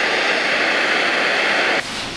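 Handheld butane torch lighter burning with a steady jet hiss as its blue flame heats the bowl of a glass rig, cutting off abruptly shortly before the end.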